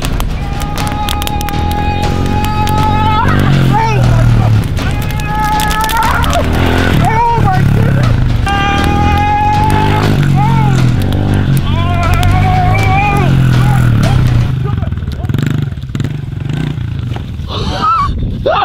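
Music: a song with long, held sung notes over a steady bass line. It thins out for the last few seconds.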